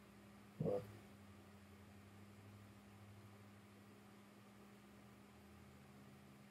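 Near silence: quiet room tone with a faint steady hum, broken once by a short vocal sound under a second in.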